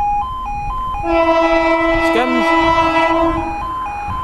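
Level crossing alarm warbling between two tones, switching about twice a second. About a second in, the approaching Class 365 electric multiple unit sounds a long, steady horn blast lasting about two and a half seconds over it.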